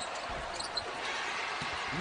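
Steady crowd noise in a basketball arena, with a few dull low thuds of the ball and players on the hardwood as a missed free throw is scrambled for.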